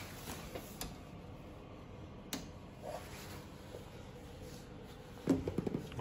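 Quiet room noise with a few light clicks and knocks of handling, one about a second in and a sharper one a little over two seconds in.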